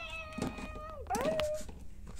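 Two drawn-out, meow-like calls: the first rises into a held note for about a second and drops away, the second glides up quickly into a shorter held note.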